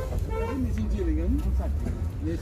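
People talking in the background over a steady low rumble.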